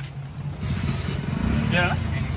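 A motor vehicle's engine running close by, its low rumble swelling through the middle, with a short voice near the end.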